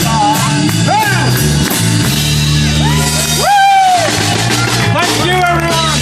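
Live folk-rock band playing: guitars, bass and drums hold steady chords under several voices singing along in long gliding notes.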